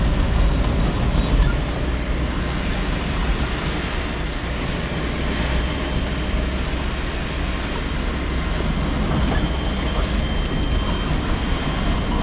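Steady road and engine noise heard from inside a moving car, with a deep rumble underneath.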